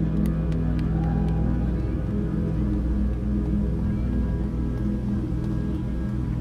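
Electronic music: a deep, steady bass drone under a slow sequence of sustained low synth notes.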